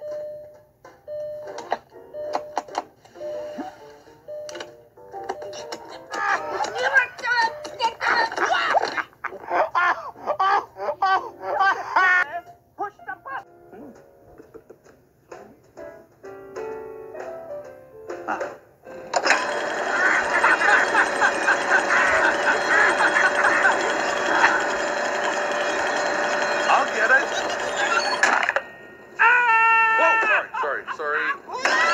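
Cartoon soundtrack: a repeating electronic beep in the first few seconds, then voices and sound effects, then from about two-thirds of the way in a loud stretch of music that cuts off shortly before the end.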